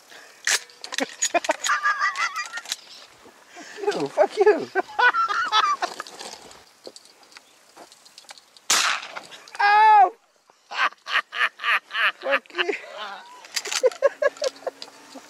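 Men's voices outdoors, talking and laughing, with a single shotgun shot a little under two-thirds of the way in, followed by a loud call and a quick run of laughter.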